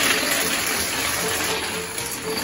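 A long chain of dominoes toppling one after another, a dense, continuous clatter, with faint music underneath.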